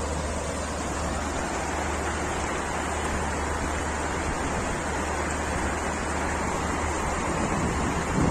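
Fast, shallow mountain river rushing over rocks in a steady, unbroken rush of water, with a deep steady rumble underneath.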